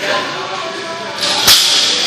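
Loaded barbell with bumper plates dropped from overhead onto the gym floor: a sharp crash about one and a half seconds in, preceded and followed by a clattering hiss.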